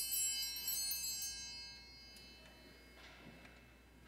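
Altar bells rung at the elevation of the chalice: a quick jingle of several small, high-pitched bells right at the start, ringing away over about two seconds.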